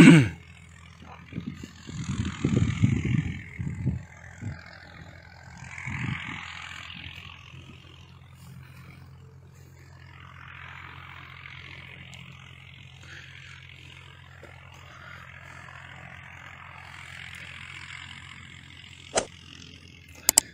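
Water running out of siphon pipes from an irrigation channel onto sandy field beds, a soft steady hiss, over a steady low mechanical hum. Low rumbling gusts come in the first few seconds, and there is a single sharp click near the end.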